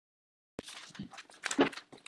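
Sheets of paper rustling and shuffling as a stack of printouts is leafed through, in short irregular bursts starting about half a second in.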